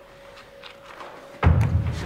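Quiet with a faint steady hum, then a sudden deep thud about one and a half seconds in.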